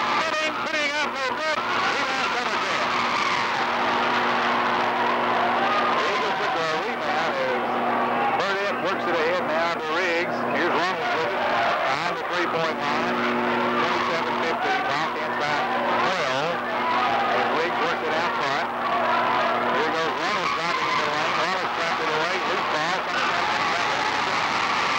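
Basketball shoes squeaking repeatedly on a hardwood gym floor during play, over the steady noise of a large crowd of spectators talking and shouting.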